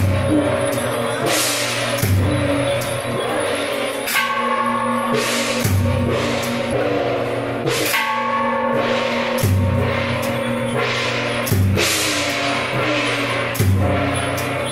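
Temple procession percussion of drum, gong and cymbals playing a slow, steady rhythm, with a deep drum stroke about every two seconds and cymbal crashes and ringing gong strokes between them.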